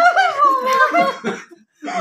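High-pitched laughter that breaks into short bursts and stops about a second and a half in.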